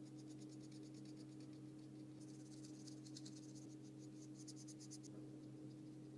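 Thin paintbrush stroking and dabbing paint onto paper: faint, quick scratchy strokes in two spells, the second from about two seconds in to about five, over a steady low hum.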